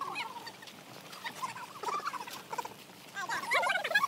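Several people's voices overlapping in conversation, with rising and falling calls that get louder near the end.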